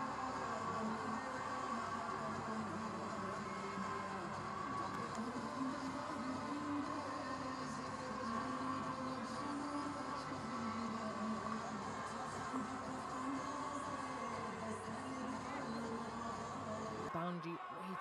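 Stadium crowd noise with music playing over the public address, a steady dense wash that cuts off abruptly about a second before the end.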